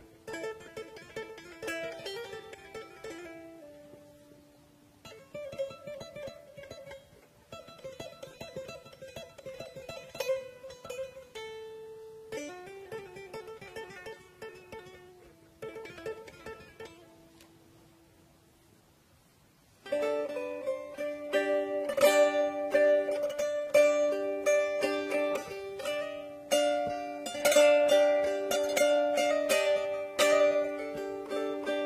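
A small saz, a long-necked Turkish lute, picked with a plectrum: single-note melodic phrases separated by short pauses, dying away almost to silence about two-thirds of the way through. A much louder, fuller passage with sustained droning notes starts suddenly near the end.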